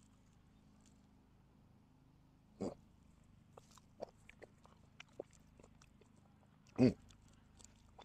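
A man eating a spoonful of baked beans close to a clip-on microphone: quiet chewing and small wet mouth clicks, broken by two short throaty 'mm' sounds of appreciation, one about two and a half seconds in and one near the end.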